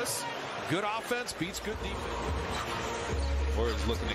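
NBA game broadcast audio at low level: arena crowd noise and faint play-by-play commentary, with a basketball bouncing on the hardwood court. A low rumble comes up near the end.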